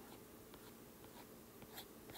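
Faint taps and scratches of a stylus drawing strokes on a tablet's glass screen, with a few light ticks near the end; otherwise near silence.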